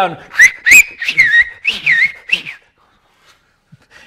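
A man whistling a short run of high, swooping notes, with a few sharp clicks among them, stopping about two and a half seconds in.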